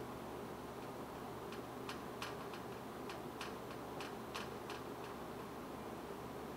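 Whiteboard marker writing on the board: about ten short, sharp clicks and taps of the tip over roughly three seconds, from a second and a half in. Under them runs a steady faint room hum.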